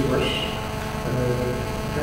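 Steady electrical mains hum from the hall's sound system, with a man's voice in a pause: the end of a word, then a drawn-out hesitation sound.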